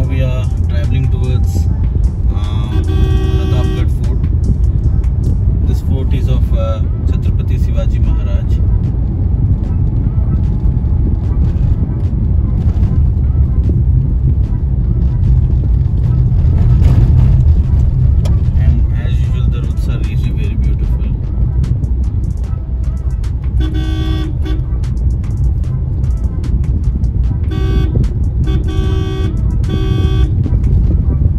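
Steady low road and engine rumble heard inside a moving car's cabin, with short car-horn toots at intervals and several in quick succession near the end.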